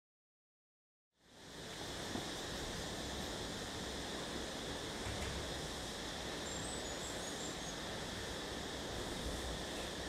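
Steady outdoor ambience, an even hiss of open-air background noise, fading in about a second in after silence. A few faint high chirps are heard briefly midway.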